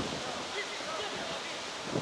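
Wind rushing on the microphone, with faint, brief shouts from footballers calling to each other during play.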